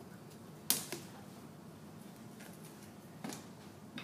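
Wooden rolling pin knocking and tapping against the clay slab and work board: a sharp knock just under a second in, a lighter one right after, and another near the end.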